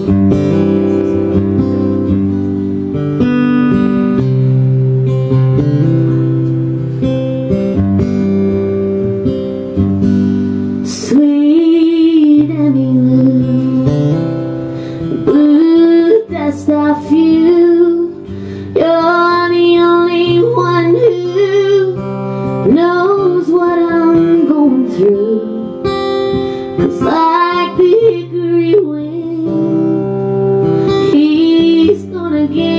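A country song played live: acoustic guitar strumming the intro, then a woman singing over it from about a third of the way through.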